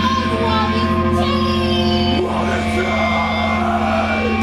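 Live punk band with distorted electric guitar and bass holding a sustained, ringing chord, and a woman's voice singing over it; there is no steady drum beat.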